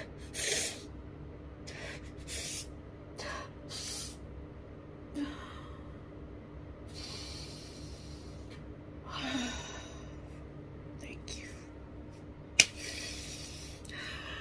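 A woman crying: a series of short sniffles and gasping, shaky breaths, with a sharp click near the end.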